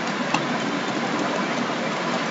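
Steady hiss of background noise, with one faint tick about a third of a second in.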